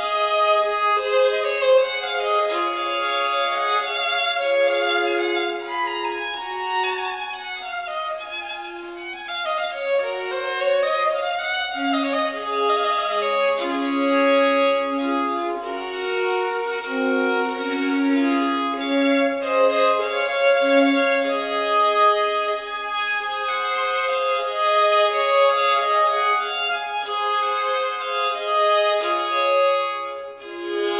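Violin music: a melody of held and gliding notes, often two or more pitches sounding together, with no bass underneath.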